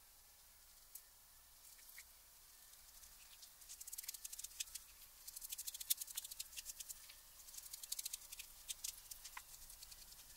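Glue brush working PVA adhesive over paper: a faint, rapid, crackly ticking of the bristles that starts about three seconds in and goes on in quick strokes.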